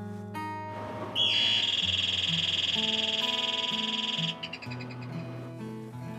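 Soft background music with sustained notes; about a second in, a loud, fast-trilling bell starts ringing, runs for about three seconds, then stops suddenly and its ring dies away.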